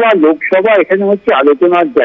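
A person speaking over a telephone line, the voice thin and narrow-sounding.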